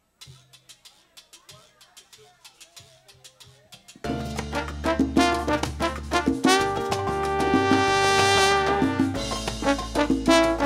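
Live salsa band starting a number: a soft percussion pattern of quick regular clicks, then about four seconds in the full band comes in loud, with horns, bass and percussion. The horns hold a long chord near the end.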